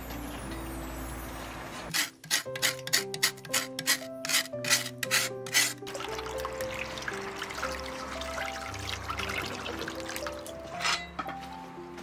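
Background music plays throughout, with about ten sharp scrubbing strokes over four seconds as a slab of cured pork is rubbed clean in a stainless steel basin. After that comes the steady splash of tap water running over the meat and into the basin.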